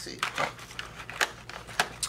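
A few sharp clicks and light rattles of a box of felt-tip markers being handled, the two loudest clicks in the second half.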